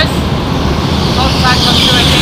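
Go-kart engine running steadily and loudly, with faint voices over it.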